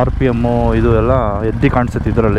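Royal Enfield Himalayan 450's single-cylinder engine running steadily under a man talking.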